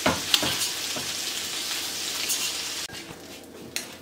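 Shrimp sizzling in hot butter in a stainless steel frying pan, with a few light clicks of a utensil against the pan. The sizzle drops off sharply a little under three seconds in.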